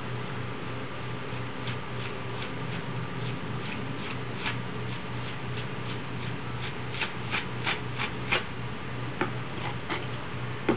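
A series of light clicks, about three a second, starting about two seconds in and loudest in a run near the end, over a steady low hum.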